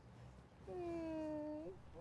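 A woman's single drawn-out 'hmm', about a second long, that dips slightly and then rises in pitch at the end.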